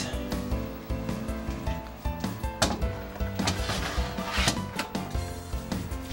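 Background music, with a few knocks and a rubbing scrape midway as a plastic-domed cake carrier is set down and slid onto a glass refrigerator shelf.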